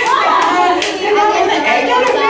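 A group of women clapping their hands in rhythm, about two claps a second during the first second, while several women's voices talk and chant over the claps.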